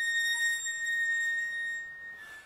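Wire comic-book spinner rack turning on its pivot, giving one long, steady, high-pitched squeal that fades out near the end.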